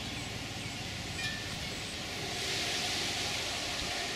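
Outdoor ambient noise: a steady hiss that swells about halfway through.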